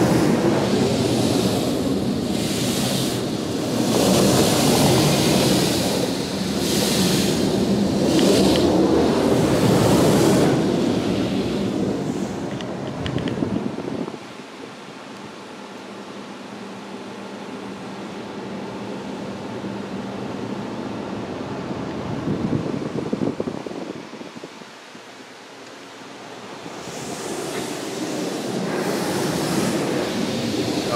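A PDQ LaserWash 360 touchless car wash arm spraying water onto the car, heard from inside the cabin. The spray hits the glass in loud surges through the first half as the arm passes, goes quieter in the middle, then builds again near the end.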